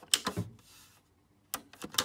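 Hazard-light push-button switch pressed by hand and clicking: one sharp click near the start and two more in quick succession near the end.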